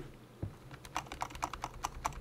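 Computer keyboard keys clicking in a quick run as a word in a file name is deleted key by key with backspace. The clicks come faster from about a second in.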